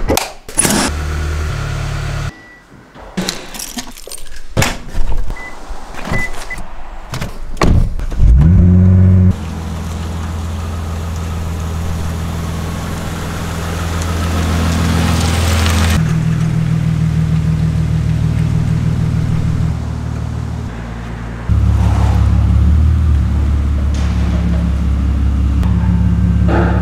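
Keys and a door latch clicking and knocking, then a Toyota Crown Athlete's engine starting about eight seconds in and idling steadily with a low exhaust note that shifts in level a couple of times.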